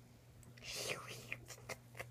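Faint rustling as plush toys and a fabric blanket are handled close to the microphone. About half a second in there is a soft breathy hiss, followed by a few light ticks.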